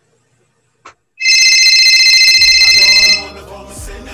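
A telephone ringing: one loud electronic trilling ring lasting about two seconds, starting just over a second in. Quieter background music comes in as the ring ends.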